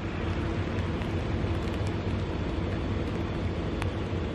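Steady low hum of the many inflatables' blower motors, mixed with cars creeping slowly along the road.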